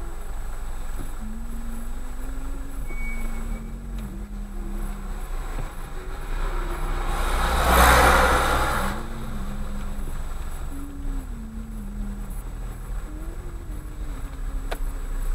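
Car engine idling at a standstill, heard from inside the cabin as a steady low hum. About eight seconds in, a rushing noise swells and fades; it is the loudest sound here.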